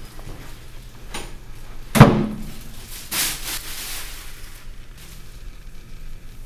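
A wooden bedroom door is shut with a single sharp thud about two seconds in, the loudest sound here. A rustle of clothing follows for a second or so as a garment is pulled off.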